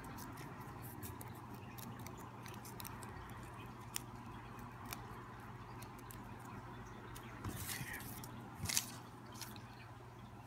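Paper slips being folded and unfolded between fingers, with faint crinkles and small clicks, louder rustles near the end, over a low steady hum.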